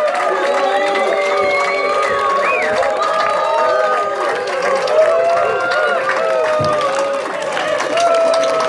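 A crowd cheering and applauding at the end of a song: many voices calling out and whooping over steady hand-clapping.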